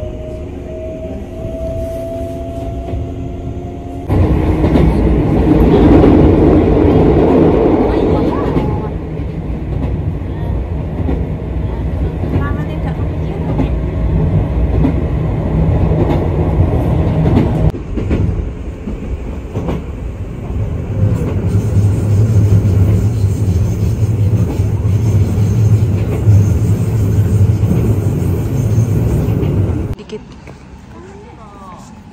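Passenger train heard from inside the carriage: for the first four seconds a motor whine rises slowly in pitch as the train gathers speed. After that comes the loud, steady running noise of the moving train, with sudden jumps in level where the footage is cut, and a steady low hum in the second half.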